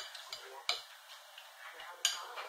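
A few light, sharp clicks of small glass and plastic being handled: a nail polish bottle and its brush cap tapping and clinking, the clearest click about two-thirds of a second in and another at the very end.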